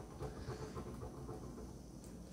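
Faint pencil strokes scratching on paper, irregular and short, over a low steady room hum.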